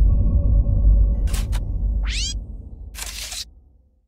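Post-production sound effects over a fading low bass from the background music: two sharp clicks a little past a second in, a short sweeping tone around two seconds, and a burst of hiss about three seconds in. The sound cuts off just before the end.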